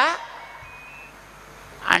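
A man's spoken discourse pauses briefly. In the pause a faint, short, steady high tone sounds, then his voice resumes near the end.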